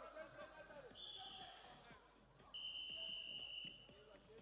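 Two faint blasts of a referee's whistle: a short high one about a second in and a longer, slightly lower one from about halfway to near the end.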